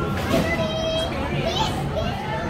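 Children playing and calling out, with one child's high call held for about half a second near the middle.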